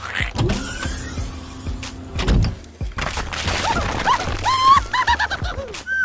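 A toy excavator's small electric motor whirring, with knocks and scraping in the first half, then a run of squeaky, up-and-down cartoon sound effects over background music.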